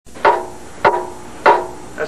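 Three hammer blows on a metal object, evenly spaced about 0.6 s apart, each giving a sharp clank followed by a brief metallic ring.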